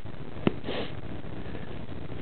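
A single sharp click, then a short breathy sniff close to the microphone, over steady background hiss.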